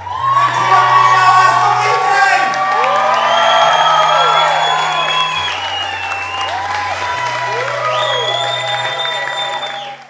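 Music with long held bass notes that change every second or two, mixed with a crowd cheering and whooping.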